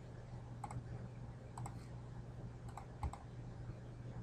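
A computer mouse clicking four times, about a second apart, each click a quick double tick of the button going down and up, over a low steady hum.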